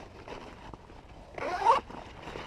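Nylon fabric of a front pack rustling as hands open and feel inside its pockets. A brief louder sound comes about one and a half seconds in.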